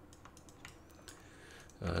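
A few faint, scattered clicks of typing on a computer keyboard, followed by a brief spoken "uh" near the end.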